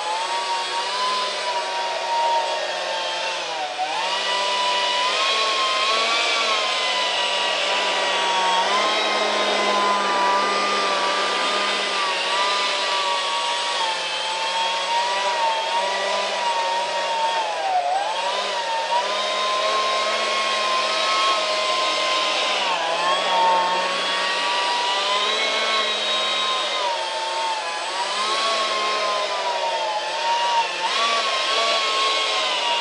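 A 70 mm electric ducted fan running steadily, a continuous whine whose pitch dips briefly and comes back several times.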